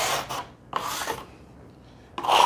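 Leftover wet plaster being scraped off a wooden board with a plastering tool. A rasping scrape runs through the first half second, a shorter one follows, and then it goes quieter.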